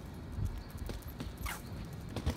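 Footsteps on a concrete sidewalk, about two steps a second, over a low outdoor rumble.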